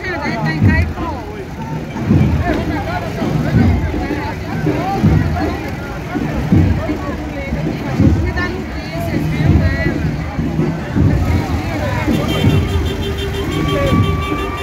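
Mixed crowd voices and vehicle sound along a street parade, under a deep regular beat about every second and a half. A steady held tone comes in near the end.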